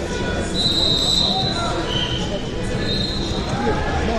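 Hubbub of many voices in a large sports hall, with three brief high-pitched tones standing out: one about half a second in, a lower one about two seconds in, and another near the end.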